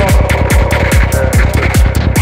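Progressive psytrance track: a steady, evenly spaced kick drum over a rolling bassline and crisp hi-hats, with a held synth tone coming in at the start.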